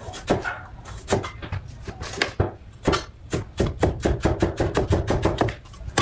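Chinese cleaver slicing a carrot on a wooden cutting board, the blade knocking the board with each cut. There are a few separate chops at first, then a fast, even run of about six chops a second from about three seconds in until shortly before the end.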